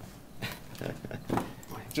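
Rustling and knocks of a clip-on microphone being handled and fitted, with a voice speaking faintly off-mic.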